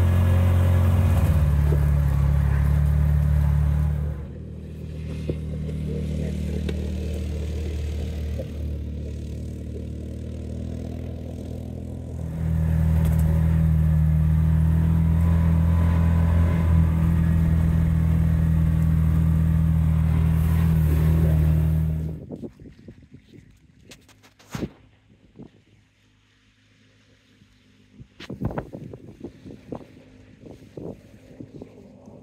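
BigHorn 550 side-by-side UTV engine running at a steady pitch while driving, heard from the cab. It eases off about four seconds in and pulls hard again around twelve seconds. It stops abruptly about twenty-two seconds in, leaving a much quieter background with a few sharp knocks.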